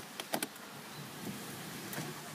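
A few light clicks of the key turning in a 2007 Renault Clio's ignition, then a faint steady whirr as the car is started, catching first time.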